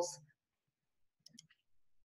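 Near silence in a small room, broken by a few faint, short clicks about a second and a quarter in.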